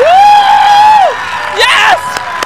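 A long, high whoop from a voice, rising at the start and then held on one pitch for about a second. A shorter rising-and-falling yell comes near the end, with no music underneath.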